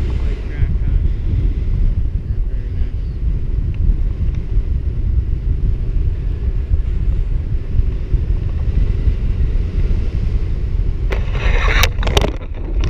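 Airflow buffeting the camera microphone during a tandem paraglider flight: a steady low rumble. About a second before the end, a louder rustling scrape covers all pitches.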